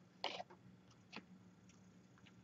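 Near silence with a few faint, brief rustles from paper oracle cards being handled and laid down. The loudest is a short rustle about a quarter second in, and a smaller one comes a little after a second.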